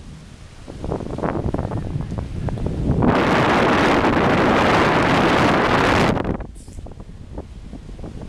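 Wind buffeting the camera microphone. About three seconds in, a loud, steady hiss starts suddenly and holds for about three seconds before cutting off.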